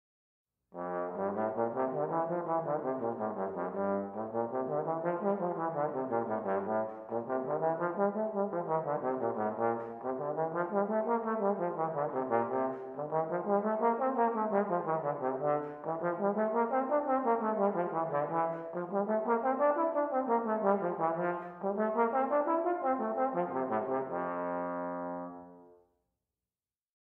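Solo trombone playing F-major scales with soft legato tonguing, running up and down again and again with each note lightly tongued. It ends on a long held note that fades out.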